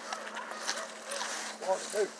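Quiet outdoor background with faint rustling and light clicks, and a short, quiet voice near the end.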